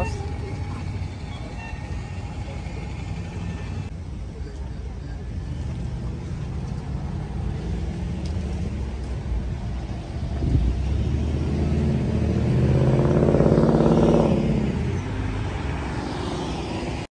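City street traffic with a steady low rumble. A motor vehicle passes close, growing louder from about ten seconds in, at its loudest shortly after, then fading near the end.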